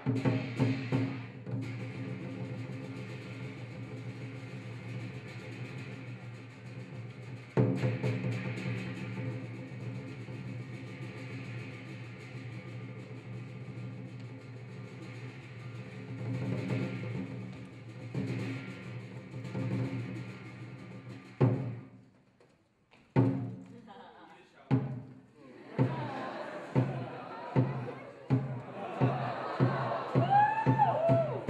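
Lion dance percussion: a long ringing tone that is struck again about seven seconds in and slowly dies away. Then, from about two-thirds of the way through, single drum strikes come in, a second or more apart at first and quickening toward the end.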